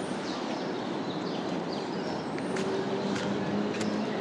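Open-air city ambience: a steady background rush with a few light clicks and some brief high chirps.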